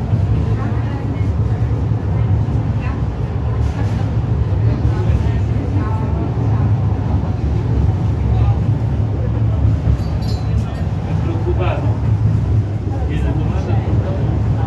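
Steady low rumble of the Resciesa funicular car running downhill on its track, heard from inside the cabin, with people talking over it.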